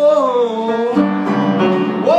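Live song: a man sings one long held note that bends gently and ends about a second in, over instrumental accompaniment that moves to a new chord.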